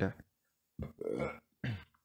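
A woman burping twice, the first burp about a second in and the second shorter, from a full breakfast.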